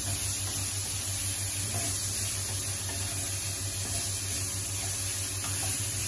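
Carrots and meat sizzling steadily in a wok on a gas burner while being stirred with a wooden spatula.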